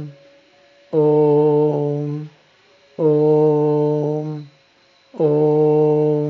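A man chanting a bija (seed) mantra, each syllable held as one long, steady tone on the same pitch. The chant repeats about every two seconds: the tail of one at the start, then two full chants, with a third beginning near the end.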